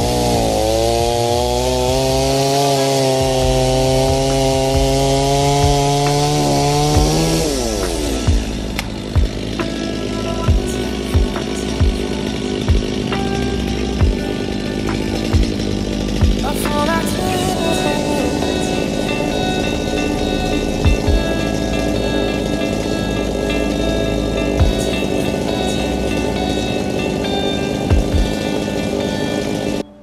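Gas chainsaw running at high revs as it cuts logs, its pitch wavering slightly under load, then dropping away about seven seconds in. Background music with a steady beat carries on after that.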